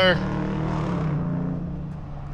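A Dodge Charger's engine running with a steady low note, its sound fading over the second half.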